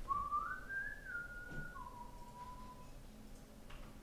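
A person whistling a short phrase: the pitch slides up, holds a high note, steps down, then settles on a lower note held for about a second before stopping.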